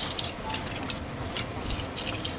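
Quiet rustling and handling of small plastic doll accessories and packaging, with a brief crinkle at the start, over a low steady hum.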